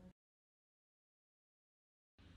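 Silence: the sound track is blank, after a brief trace of room noise at the very start.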